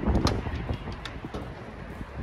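Wind buffeting the microphone as a low rumble, with a few sharp clicks in the first half second.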